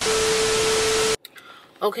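TV static transition sound effect: a loud white-noise hiss with a steady beep tone under it, lasting about a second and cutting off abruptly.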